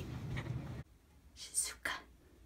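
Faint room hum that cuts off suddenly, followed by two short breathy, whispered sounds from a person's voice near the end.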